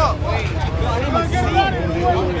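A crowd of people talking over one another, with a steady low rumble underneath.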